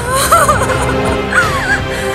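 Dramatic film background score: a steady low drone under wavering, gliding melodic notes, with two curling phrases, one just after the start and one past the middle.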